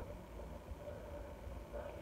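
Quiet room tone: a faint low rumble with no distinct sound.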